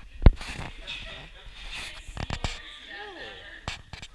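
A baby's short coo that rises and falls in pitch about three seconds in, with sharp handling knocks, the loudest just after the start.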